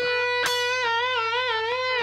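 Electric guitar playing a single sustained bent note that is re-picked about half a second in and then held with a wide, even vibrato. The bend is made with the thumb hooked over the top of the neck as a pivot.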